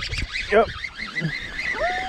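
Goose honking, with a short call about half a second in and a longer call near the end.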